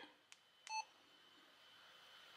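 Yaesu FT-70D handheld radio giving one short electronic key beep as a key on its keypad is pressed, confirming the key press. A faint click comes just before the beep.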